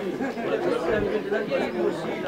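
Indistinct chatter of several people talking at once, with overlapping voices.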